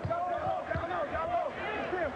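A basketball bouncing on a hardwood court, with two knocks, one at the start and another under a second in. Sneakers squeak over a steady crowd murmur.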